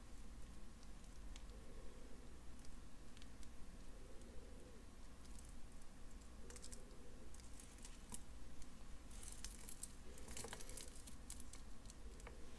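Faint, scattered small clicks of jewelry pliers working a metal jump ring closed, then the handling of a crystal-bead bracelet, with a denser run of light clicks a little before the end.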